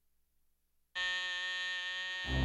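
Alarm clock buzzer going off suddenly about a second in, holding one steady buzzing tone.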